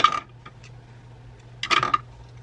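Small hard makeup products, such as eyeliner pencils and tubes, being set down in an organizer tray: two quick bursts of clicking and clinking, one at the start and one near the end.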